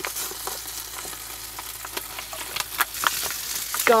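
Eggs frying in a small pan on a gas burner: a steady sizzle with frequent small crackling pops.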